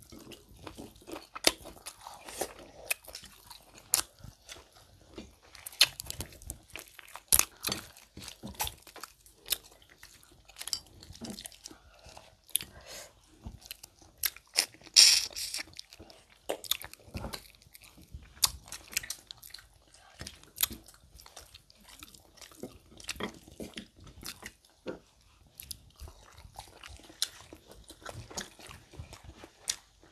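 Close-miked eating: chewing and crunching on barbecue buffalo chicken wings and seafood boil, with irregular wet mouth clicks and smacks, and a longer, louder burst about fifteen seconds in.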